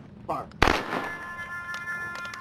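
A firing party's rifles going off together in one sharp volley with a short echo tail, the last of the three volleys of a rifle salute, fired on the shouted command "Fire".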